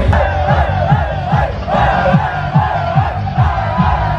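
Live beatbox through a PA: deep bass kicks, each falling in pitch, about three a second, under a large crowd shouting and cheering.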